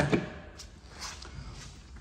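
Quiet indoor room tone with a couple of faint, soft taps in the first second or so.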